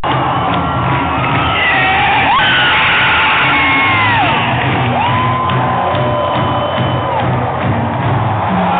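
Ballpark crowd cheering a walk-off win, with close-by screams and whoops held and sliding up and down in pitch, over music playing on the stadium sound system.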